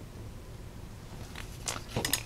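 Quiet room tone, then a few faint crisp clicks and rustles near the end as hands press on and lift off a paper card on a cutting mat.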